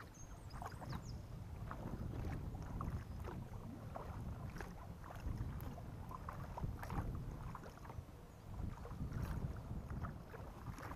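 Kayak paddling: the paddle blades splash and drip into calm water every second or two, over a low rumble of wind on the microphone.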